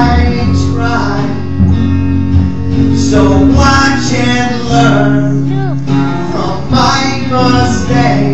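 A man singing a song over a strummed acoustic guitar tuned to drop C# and an electric hollow-body guitar.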